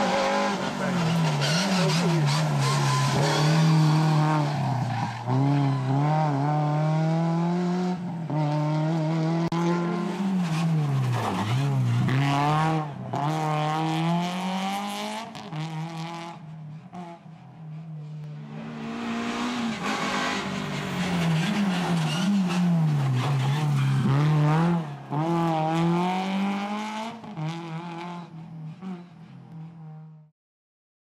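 A Renault Clio rally car's engine revving hard at stage speed. Its pitch holds flat at high revs for stretches, then drops and climbs again at each gear change and braking, over several passes. It is quieter for a couple of seconds past the middle and cuts off abruptly at the end.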